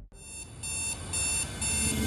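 High-pitched electronic beeps repeating about twice a second, four in a row, the first softer, like an alarm clock going off.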